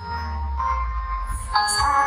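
Live pop performance over a hall PA: a woman sings a long, held high note into a microphone over a backing track with a steady bass. The note steps up in pitch and swells louder near the end.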